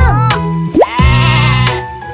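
Children's nursery-rhyme song with a steady backing beat; a sung phrase ends at the start, then a long wavering, bleat-like call rises in and holds for about a second in the middle.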